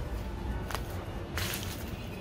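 Steady low rumble of city street noise, with a faint sharp snap under a second in and a short, sharp swish about a second and a half in.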